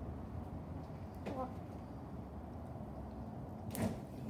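Refrigerator door pulled open, a sharp sound near the end, over steady low kitchen room noise, with a short voice sound a little over a second in.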